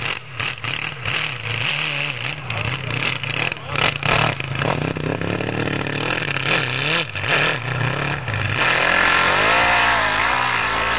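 Nitromethane-fuelled 1325 cc four-cylinder Kawasaki engine of a custom snowmobile running unevenly at low revs, its pitch wavering, then revving hard near the end as the sled pulls away.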